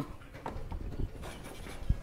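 Quiet lecture room with a few soft, irregular taps and a short low thump near the end, from the lecturer working at the chalkboard.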